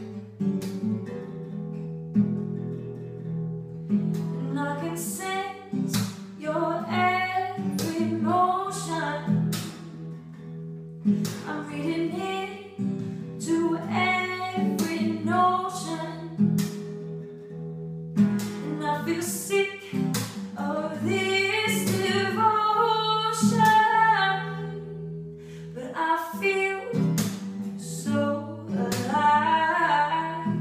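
A woman singing while strumming a cutaway acoustic guitar: sung phrases over steady chords, with short breaks between phrases every few seconds.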